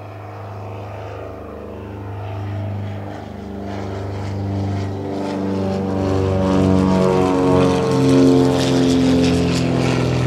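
Britten-Norman BN-2 Islander's twin propeller engines at climb power after takeoff: a steady drone with many overtones that grows steadily louder as the aircraft comes closer.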